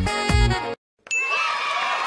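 Electronic dance music with a thumping beat cuts off suddenly; after a short silence a cartoon sound effect plays: a bright ding followed by a shimmering, wavering ring.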